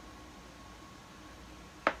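Quiet room tone with a faint steady hum, then one short, sharp click near the end.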